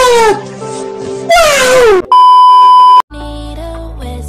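A voice in long, falling wails over a backing track, then a loud steady beep about a second long that cuts off abruptly as a dance track with a heavy bass line starts.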